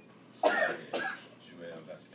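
A person coughing twice in quick succession, the first cough the louder, followed by faint speech.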